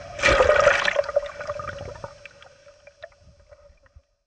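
A loud splash of water in the first second, dying away over the next two seconds into scattered drips and trickles. A faint steady hum runs underneath.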